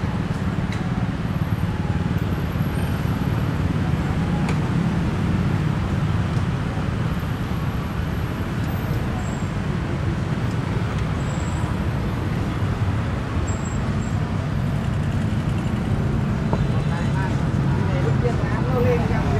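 Busy city street traffic: a steady low rumble of motorbike and car engines passing and idling at a junction.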